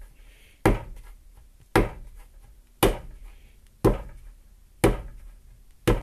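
A lump of clay being rocked onto its edge and pounded down on a board, six thumps about a second apart, as it is stretched into a tapered carrot for pulling mug handles.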